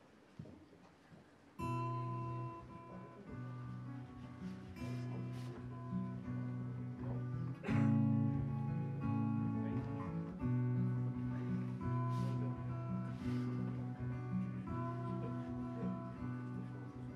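Solo acoustic guitar, picked, playing an instrumental intro: after a brief hush it comes in about a second and a half in and keeps up a steady pattern of ringing notes.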